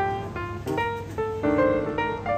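Background piano music: chords and single notes struck every half second or so, each ringing and fading.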